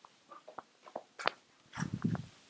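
Footsteps of a person and a boxer walking on a leash across a hard floor: a string of light clicks and taps, with a heavier low thud near the end.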